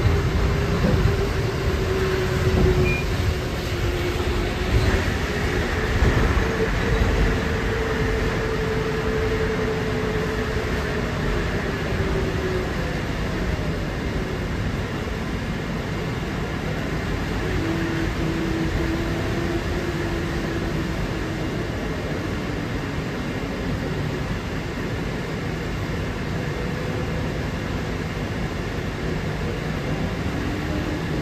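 Inside a 2006 New Flyer electric trolleybus under way: a traction-motor whine rises and falls with the bus's speed over a steady road rumble. A few louder knocks and rattles come in the first several seconds.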